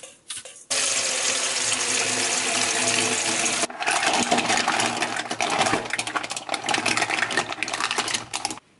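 A few quick clicks of salt being shaken into a stainless steel bowl, then tap water running steadily into the bowl for about three seconds. From about four seconds in, live dongjuk clams tumble out of a plastic bag into the water, their shells clicking and clattering against each other and the steel bowl with splashing.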